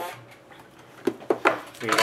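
A cardboard trading-card box and cards being handled and set down on a hard tabletop: a short knock at the start, then a few sharp taps a second or so later.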